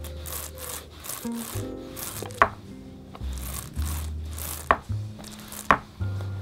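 Paint roller loaded with white paint being rolled back and forth over the ridged grid of a plastic paint tray, in repeated strokes about every half second. Background music with a bass line plays under it, and three sharp clicks stand out in the second half.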